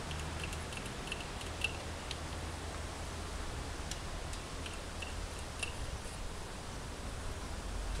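Quiet handling sounds as the wick oilers on a stationary engine are topped up: a few faint, short clicks and taps spread over the first six seconds, over a steady low hum. The engine itself is not running.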